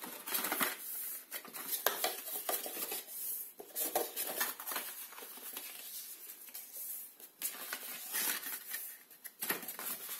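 Scored card stock being folded and creased by hand along its score lines: irregular rustles, rubs and small clicks and knocks of the card flexing and being pressed against a cutting mat.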